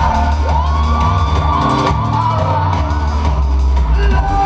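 Loud live electronic dub music over a club PA, with heavy sustained bass and a high tone that slides up about half a second in and is held, while the crowd whoops and shouts.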